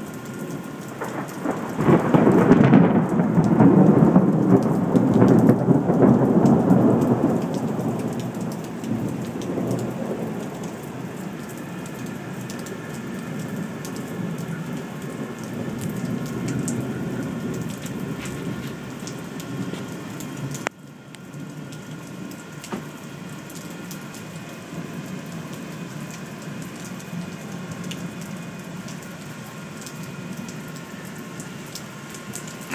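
Thunder rolling through a thunderstorm: a loud rumble builds a second or two in, holds for several seconds and fades away, over steady heavy rain.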